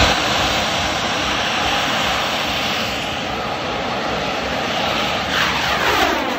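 A bang fai saen, a large Thai black-powder rocket, ignites on its launch tower with a sudden loud start and climbs away with a steady rushing hiss from its motor. Near the end a falling sweep runs through the tone.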